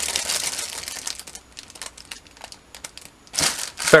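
Clear plastic bag around a plastic model-kit sprue crinkling as it is handled. The crinkling is dense for the first second or so, thins to scattered crackles, then comes in a short loud burst near the end.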